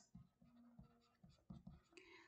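Near silence, with a few faint taps and scrapes of a stylus writing on a tablet screen.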